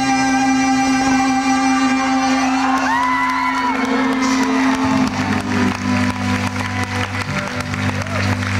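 Live rock band with electric guitar: a chord rings out and sustains, a high tone slides about three seconds in, and deep bass notes come in about five seconds in. Crowd clapping and cheering rises through the second half as the song nears its end.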